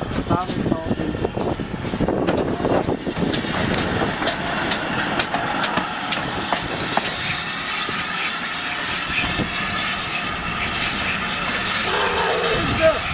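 GWR Large Prairie 2-6-2T tank steam locomotive 5199 rolling slowly past at close range, with wheels clicking and clanking over the rail joints and a steady hiss.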